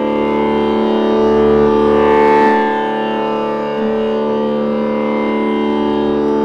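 Steady musical drone of several held notes, the sruti that gives the pitch before a Carnatic dance accompaniment begins. It swells slightly over the first two and a half seconds, then eases off a little.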